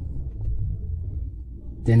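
A low, steady background rumble, with a man's voice coming back in near the end.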